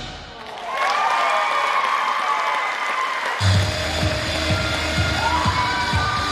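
Dance routine music in a break: the drum beat drops out for a few seconds under higher gliding tones, then comes back in sharply about three and a half seconds in.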